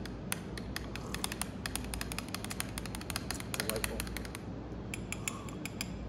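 Many quick, irregular little clicks and ticks over a steady low background rumble.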